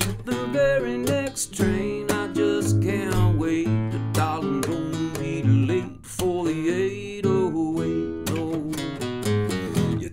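Acoustic guitar playing an instrumental break, with a steady pulse of low bass notes under a moving melody line.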